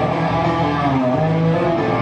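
Electric guitar played live, with held notes that bend in pitch about a second in, over a steady bass line.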